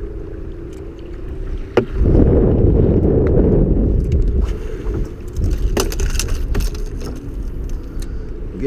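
Low rumbling noise of wind and water around a small open fishing boat, louder for a couple of seconds from about two seconds in, with a few clicks and knocks.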